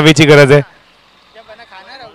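A man's loud commentary voice that breaks off about half a second in, followed by faint, distant voices.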